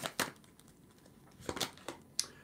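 Tarot cards being shuffled and handled: a short rattle of cards at the start, then a couple of brief card clicks about a second and a half in, with quiet between.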